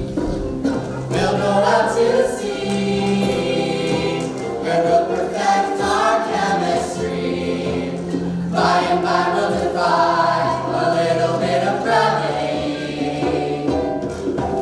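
A song performed by a group of voices singing together with a live band that includes an electric guitar, with sustained sung notes over a steady bass line.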